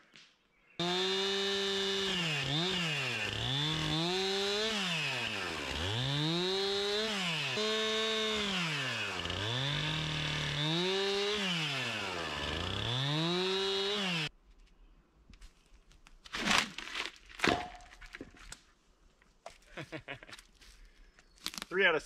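Two-stroke chainsaw bucking a thin sapling log into short lengths: the engine runs at high revs and its pitch sags and recovers over and over as it bites through each cut. It cuts off suddenly about fourteen seconds in, followed by a few faint knocks.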